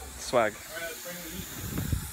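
Water spraying from a garden hose nozzle, a steady hiss.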